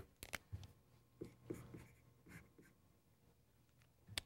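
Faint scratching of writing strokes, a few short ones in the first two and a half seconds, in an otherwise near-silent room.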